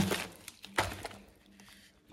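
A few faint crinkles of plastic cling film as a wrapped piece of cheese is handled, in the first second, then near quiet.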